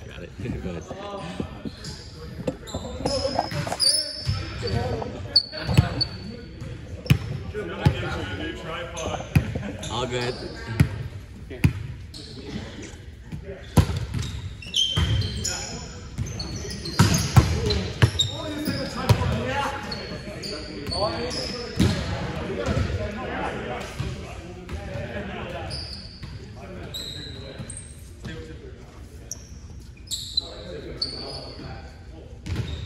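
Indoor volleyball being played on a hardwood gym floor: repeated sharp smacks of the ball being hit and landing, short high shoe squeaks, and players' indistinct voices, all echoing in a large hall.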